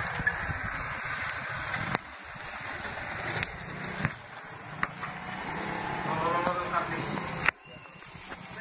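Wooden toothed drag scraping and rattling through loose granules on the ground, with a few sharp knocks. The sound changes abruptly a few times, and a voice is faintly heard about six seconds in.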